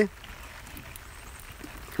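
Light rain falling on the river and the boat: a soft, steady hiss with a few faint drop ticks.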